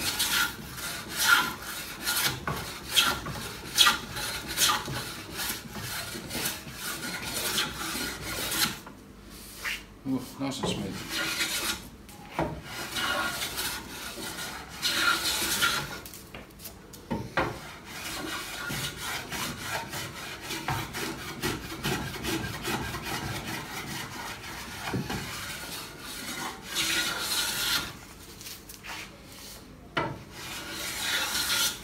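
Restored hand plane cutting along a timber board: a run of rasping strokes as the blade shaves the wood, with a few short pauses between passes.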